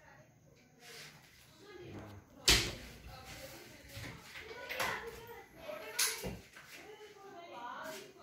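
Wardrobe cabinet doors being opened and shut, with a sharp knock about two and a half seconds in, the loudest sound, and another knock about six seconds in.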